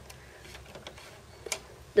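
Plastic Lego turntable and gear mechanism being turned by hand: a few faint ticks, then one sharper click about one and a half seconds in.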